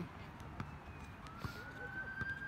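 Distant emergency-vehicle siren wailing: one slow tone that climbs about a second in and holds high. A few sharp knocks of a basketball being dribbled on the court.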